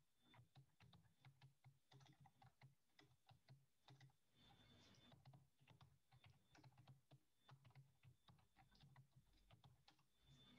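Faint typing on a computer keyboard: quick, irregular runs of key clicks with a short pause partway through.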